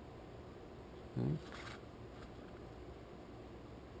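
A man's short murmured hum about a second in, followed by a brief hiss; otherwise only faint room tone.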